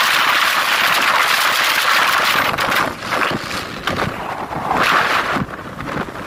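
Wind rushing over the phone's microphone on a moving motorcycle, a loud rushing noise that surges and briefly dips a few times, most clearly around three seconds in and near the end.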